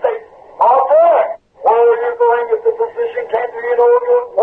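Speech only: a man preaching in short phrases. Through the second half his voice holds a nearly steady pitch in a drawn-out, sing-song delivery.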